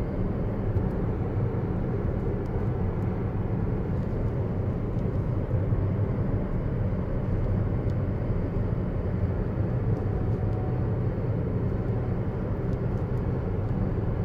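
Steady, low road and tyre noise inside the cabin of a Tesla Model S P85D, an electric car with no engine note, cruising at about 47 mph.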